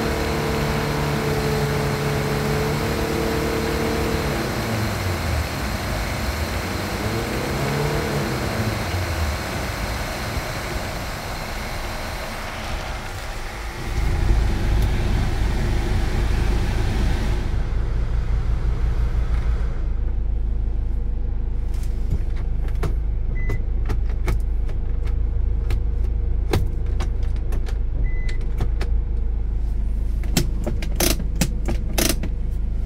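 Air conditioning blower rushing air out of a Hyundai Starex van's dash vents while the engine runs. The rushing fades out about two-thirds of the way through, leaving a low engine rumble, scattered clicks and two short beeps.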